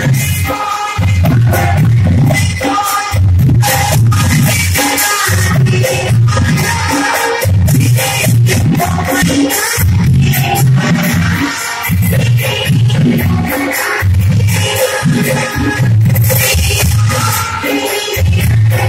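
Devotional aarti song: singing over music with a strong bass pulsing at a regular pace.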